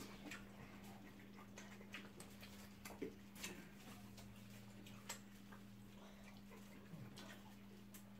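Quiet room with a steady low hum and scattered soft clicks and smacks of people eating by hand: chewing, lip smacks and fingers on the food and banana leaves, a little louder about three and five seconds in.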